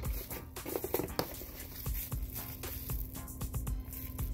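Crinkling and crackling of plastic bubble wrap and packaging being handled in a cardboard box, many small irregular clicks, with music playing in the background.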